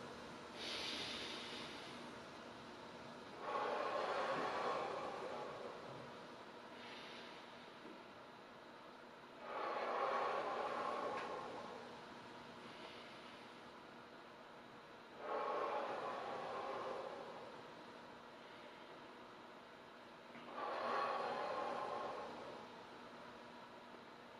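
A man's slow, deep breathing, heard as soft rushes of air going in and out. A stronger breath comes about every six seconds, with fainter ones between, in time with slow side-bending stretches.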